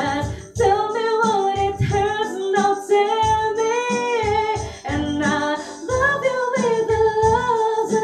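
Female lead vocalist singing two long phrases of held, wavering notes with no clear words, over band accompaniment with a steady low beat.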